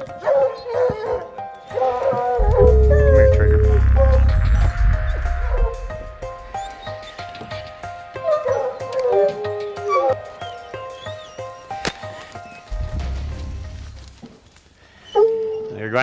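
Several hunting hounds baying and yipping excitedly as they are turned out on a fresh bear track, with drawn-out calls that fall in pitch. A loud low rumble comes in from about two and a half to six seconds in, and again briefly near the end.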